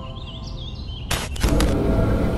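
Soundtrack music dying away under a faint warbling chirp, then a sudden burst of whooshing noise about a second in that gives way to a loud low rumble.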